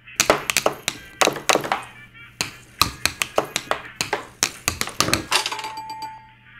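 A quick run of sharp taps and thuds, a couple of dozen in six seconds, as padded camera lens pouches are handled and knocked down on a wooden tabletop.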